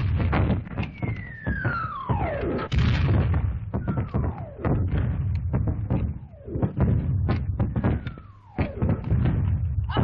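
Battle sound effects on an old film soundtrack: artillery shells whistle in with falling pitch, about four of them a couple of seconds apart. Each comes down amid a continuous din of explosions and sharp cracks of gunfire.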